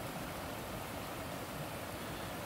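Steady rush of a waterfall: an even noise of falling water, unchanging, with no distinct events.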